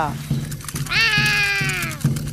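A cartoon dinosaur roar: one long, high, voice-like roar of about a second, starting about a second in and sliding slightly down in pitch.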